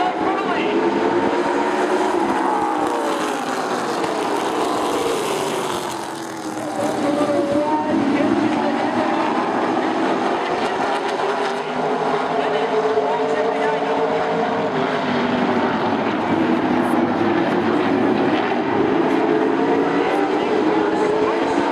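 A pack of short-track stock cars racing around an oval, their engines rising and falling in pitch as they go through the corners and down the straights, dipping in loudness about six seconds in before building again.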